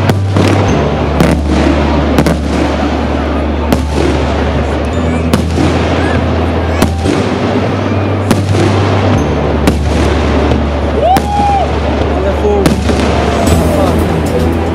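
Aerial firework shells bursting one after another: a dense run of sharp bangs and crackle, with a music track's steady bass underneath.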